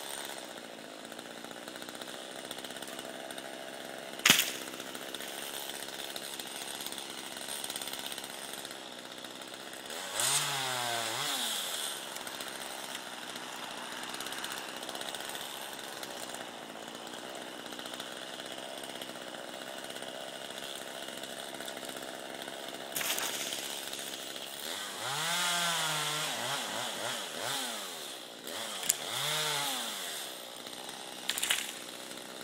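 Chainsaw running at idle, revved up and back down about ten seconds in and again several times from about twenty-five seconds in. A single sharp crack about four seconds in.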